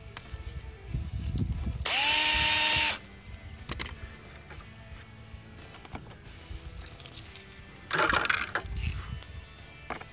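Power drill spinning up fast and running for about a second as it drills a pilot hole through the dive plane into the bumper, then a second, rougher burst of drilling near the end.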